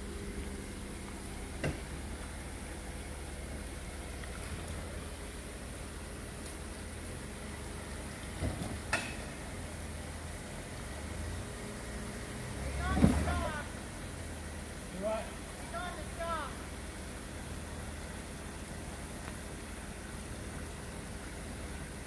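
Jeep Wrangler engine running steadily at a low idle, with a few short knocks. People call out briefly about halfway through and again a few seconds later.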